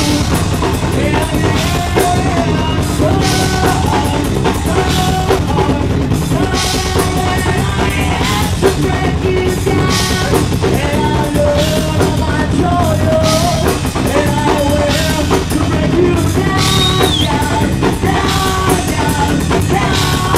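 A live metal band playing at full volume: a busy drum kit with bass drum over distorted guitars and bass, and singing at times.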